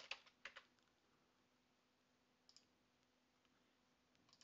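Near silence with faint computer keyboard keystrokes in the first half-second, then one more faint click about two and a half seconds in.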